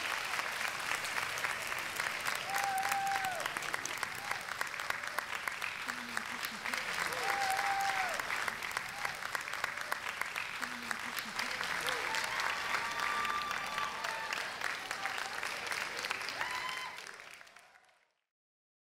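Audience applause, with a few voices calling out over it, fading out about a second before the end.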